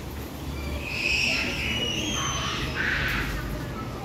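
Birds calling: high whistled and chirping notes from about half a second in until near the end, over a low steady rumble.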